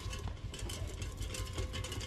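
Homemade lantern made of tin cans rolling along a tiled floor: a steady low rumble with many small clicks and rattles.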